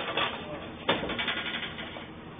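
Bulky object knocking against a metal-bar gate as it is carried through: a sudden knock about a second in, after one just before, each followed by rattling.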